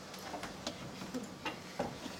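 A handful of faint, irregularly spaced clicks over a steady low hum.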